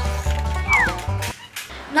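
Upbeat banjo background music that stops a little over halfway through, with a short falling squeal just before it ends.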